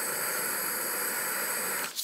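Steady hiss of a heat tool warming a seized screw in a Singer 66 sewing machine to free it. It cuts off near the end.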